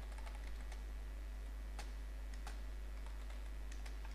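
Computer keyboard typing: faint, irregular keystrokes over a steady low hum.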